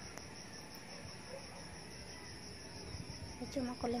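Steady, high-pitched chorus of insects droning without a break. A voice starts to speak near the end.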